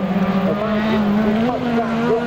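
Autocross race cars' engines running hard across a dirt course, a steady drone with pitches that keep rising and falling as the drivers work the throttle.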